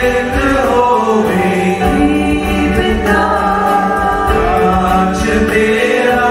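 A small mixed church choir singing a slow liturgical chant in held notes, accompanied by keyboard and guitar.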